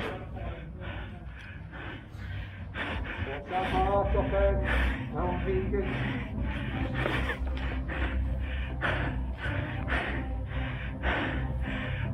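An airsoft player breathing hard into a face mask: quick, repeated breaths, about two a second, after exertion in the game. Faint voices are heard behind it, about four seconds in.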